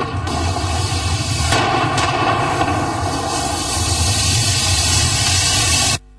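Explosions from a street clash, dynamite charges and tear-gas shots: a bang at the start and two more about a second and a half and two seconds in, over a loud continuous din. The sound cuts off suddenly at the end.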